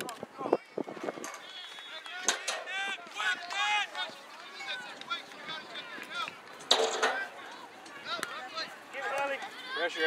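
Distant voices of players and spectators calling out across an outdoor soccer field, with a louder shout about seven seconds in. A few sharp knocks sound in the first second.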